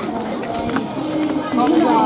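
Crowd chatter: several voices talking at once, with light clicking footsteps on a paved path.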